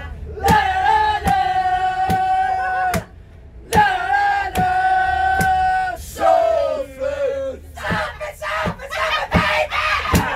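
A group of people singing together, holding two long notes, each a couple of seconds, with a short break between them, to hand claps about every three quarters of a second. Shorter, more ragged sung phrases and claps follow in the second half.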